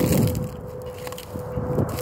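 Wind rumbling on a phone microphone, with a faint steady high hum underneath. The rumble dies down in the middle and picks up again near the end.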